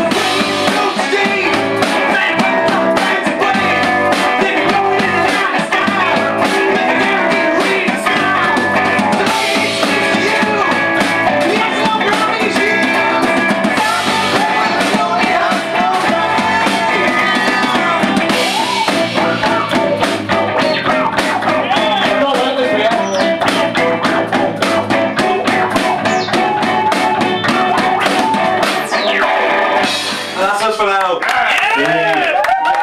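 Live rock band playing loud and steady on electric guitars and a drum kit.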